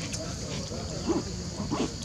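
Two short vocal calls from macaque monkeys, about a second in and again near the end, over a steady high hiss.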